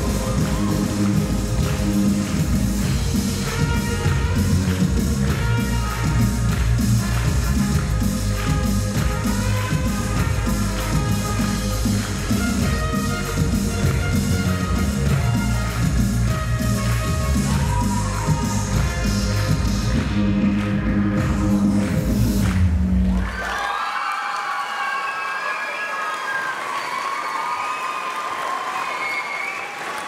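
Rock'n'roll dance music with a steady, driving beat, cutting off suddenly about 23 seconds in. After it the crowd applauds and cheers.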